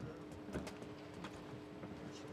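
Faint ambience of a live boxing bout: a few soft knocks from the ring over a steady low hum.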